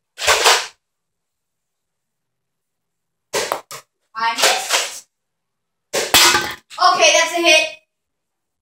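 A Nerf Longshot CS-6 spring blaster being primed and fired, with a few sharp clacks and a snap about six seconds in. A boy's voice comes in between them.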